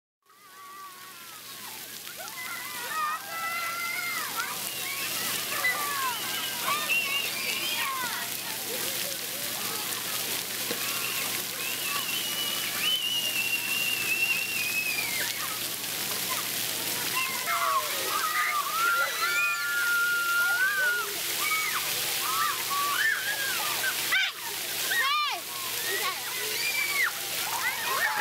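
Children's voices shouting and squealing over a steady hiss of spraying and splashing water, fading in over the first couple of seconds.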